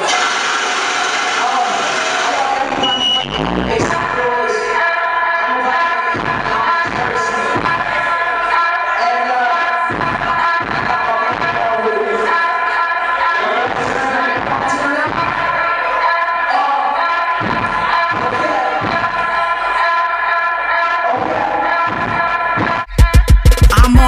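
Club music playing in an echoing nightclub room, with crowd voices beneath it. Near the end comes a fast run of loud, evenly spaced bass hits.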